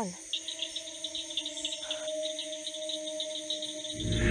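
Crickets chirping in a fast, regular rhythm of short high pulses, over a quiet sustained musical drone holding a few steady notes.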